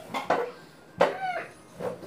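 A few short bursts of a person's laughter, each falling in pitch, with brief pauses between them.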